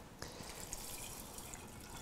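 Infused moonshine trickling faintly from a stainless steel pot through a mesh strainer and funnel into a glass mason jar, with a light click just after the start.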